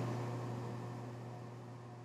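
Quiet room tone: a steady low hum under a faint hiss, easing slightly quieter over the two seconds.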